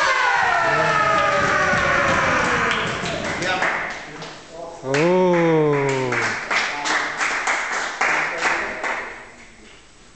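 Karate kiai: a loud shout from several performers closing the kata, rising sharply and then falling in pitch over about three seconds, echoing in a large hall. About five seconds in, a man gives one long drawn-out call, rising then falling, and then a few seconds of clapping follow.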